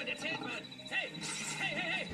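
A man's unintelligible cries, several short wavering calls that rise and fall in pitch, with faint music underneath.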